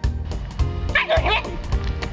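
Background music with a steady beat. About a second in, a husky gives a brief run of high, wavering yips over it.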